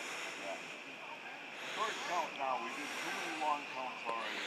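Several people talking indistinctly in the background over a steady hiss; no words can be made out.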